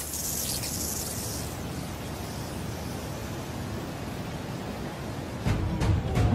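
Cartoon sound effect of a waterfall: a steady rush of falling water, brightest and hissiest in the first second or so. A deeper, louder rumble joins near the end.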